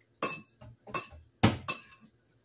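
A spoon clinking against a ceramic mixing bowl four times, with short bright rings, while sliced pork is stirred in a soy sauce marinade.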